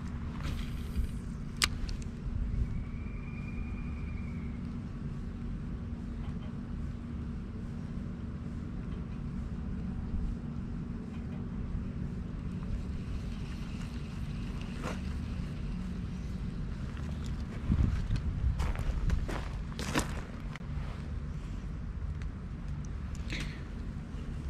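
Steady low outdoor rumble with a faint steady hum, broken by scattered sharp clicks and knocks, a cluster of them about 18 to 20 seconds in, and a brief high whistle about three seconds in.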